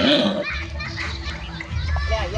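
Children's voices chattering and calling out over one another, loudest in the first half second, with a low rumble starting about half a second in.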